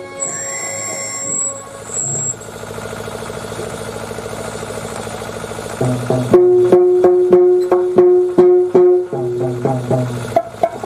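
Traditional Tamil drama accompaniment music: a held note over a steady beat of drum strikes. The beat breaks off early into a softer, fast, even rattle, then the held note and drum strikes return about six seconds in.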